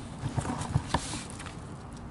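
Hands pulling the innards from a small gutted Chinook salmon lying on sheets of newspaper: a quick run of soft knocks, clicks and rustles in the first second, then quieter.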